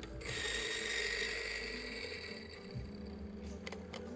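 Mahlkönig electric coffee grinder running for about two seconds as it grinds a dose of coffee into a dosing cup. It starts just after the beginning and cuts off a little past halfway.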